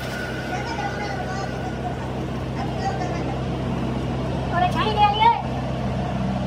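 Large metal lathe running steadily as it turns the end of a steel truck drive shaft tube, the tool cutting off long curls of swarf, with a steady motor hum and a thin high tone over it. A voice rises over the machine about five seconds in.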